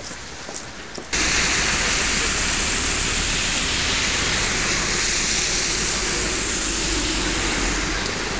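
A loud, steady rushing noise with a deep rumble in it, starting abruptly about a second in.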